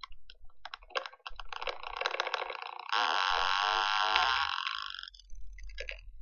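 Glitchy electronic soundtrack of a projected video artwork, played through speakers: crackling clicks at first, then about three seconds in a dense hiss with bending, rising and falling tones that cuts off suddenly about two seconds later.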